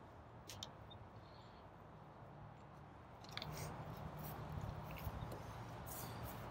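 Faint handling noises: a few light clicks and rustles as books and plastic cups are picked up and balanced on the palms, over a low outdoor rumble that grows slightly louder in the second half.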